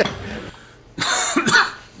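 A man coughing and laughing, two short coughs about a second in: a sputtering, gagging reaction to the taste of menudo (tripe soup).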